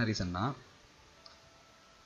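A brief burst of a man's voice at the very start, then low room tone with a single faint computer mouse click just over a second in.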